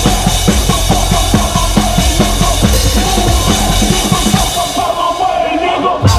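Drum kit played live, heard close up, with fast steady kick and snare hits over a band's bass. Near the end the cymbals and hits drop away for a moment before the full band comes back in.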